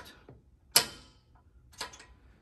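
Two sharp clicks from the adjustment mechanism of a Panatta seated leg curl machine as its lever is worked, the first loud and the second weaker about a second later.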